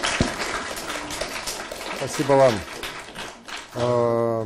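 Audience applause, a dense patter of clapping that gradually thins out, with a man's brief speech over it partway through and again near the end.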